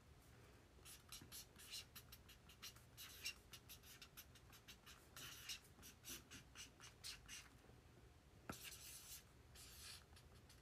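Faint, irregular scratching and rustling close to the microphone, like a pen on paper or hands handling something, with a sharp click about eight and a half seconds in.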